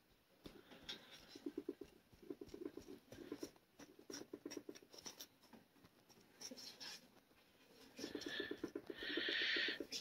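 Faint rustling and scratching of a hand brushing over and patting loose potting soil in a plastic planter, in short bursts with soft scrapes between.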